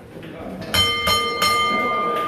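Boxing ring bell struck twice, about two-thirds of a second apart, starting near the middle, its bright metallic ringing carrying on after each strike.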